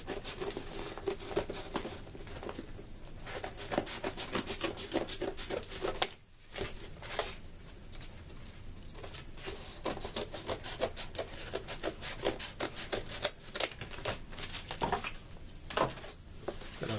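Cardboard being cut, a run of short scratchy cutting strokes, several a second, with a brief pause about six seconds in.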